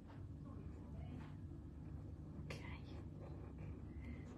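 A black fineliner pen drawing on a small paper tile: faint, short scratching strokes over a steady low room hum.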